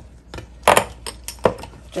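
A spoon knocking against a small glass bowl as an oily seasoning marinade is stirred: a few sharp clinks, the loudest about two-thirds of a second in and another about a second and a half in.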